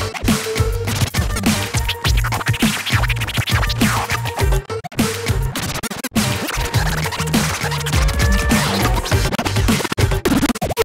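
Turntablist routine: vinyl records scratched and cut on two turntables through a DJ mixer, over a chopped electronic bass line and beat. The sound stops dead for an instant a couple of times around the middle.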